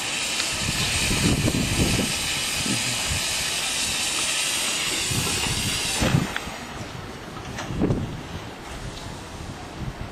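Narrow-gauge steam locomotive standing with steam hissing steadily from it. The hiss cuts off suddenly about six seconds in, leaving wind rumble on the microphone.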